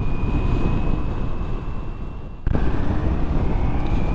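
Riding noise from a Ducati Multistrada V4S under way: a dense low rumble of wind and engine with a thin steady whistle above it. About two and a half seconds in the sound cuts abruptly and comes back louder.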